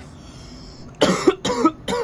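A man coughing: a quick run of short, sharp coughs starting about a second in.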